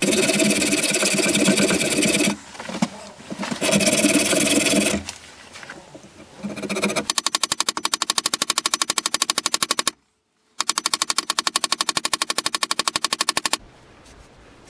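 A hacksaw cutting in two long runs of strokes. Then a small hammer taps fast and evenly on metal held against a bench vise, with a brief break partway through.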